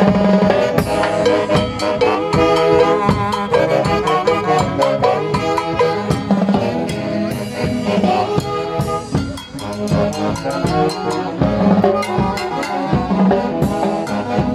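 Live dance band playing: a saxophone section carries the melody over busy timbale, cymbal and drum-kit percussion.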